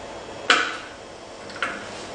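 Two short, sharp knocks about a second apart, the first louder, from bar tools or ingredients being handled and put down on a bar counter, over a low room hum.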